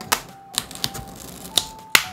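About five sharp, irregular clicks and taps of a Sony smartphone's plastic back cover and a small tool being handled and pried, the loudest near the end.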